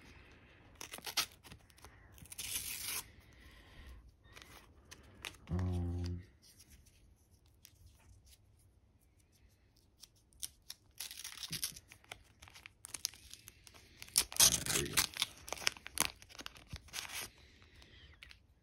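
Paper sticker-pack wrappers being torn open by hand, in a series of short rips and crinkles. The loudest rips come in a cluster over the last few seconds.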